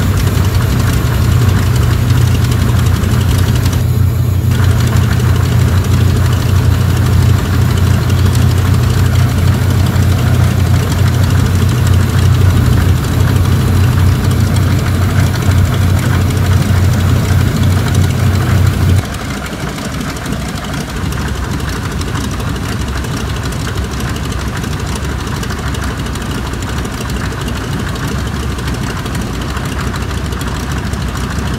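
Both radial engines of a PBY Catalina running steadily, a deep drone heard from inside the cockpit, with the port engine on a newly fitted carburettor. About two-thirds of the way in the sound suddenly drops in level and loses much of its deep drone, then runs on steadily.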